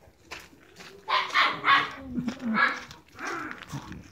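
A dog barking: a quick run of loud barks about a second in, then two more barks in the second half.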